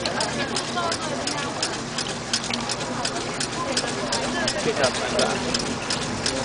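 Water and ore slurry poured from a plastic bucket into a diaphragm jig's tank, a steady wash of sound under background chatter, with a run of sharp ticks about three a second.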